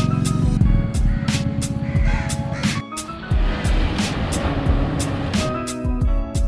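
Background music with a steady beat: a deep kick drum about twice a second, crisp high ticks and sustained notes, with a hissing wash swelling through the middle.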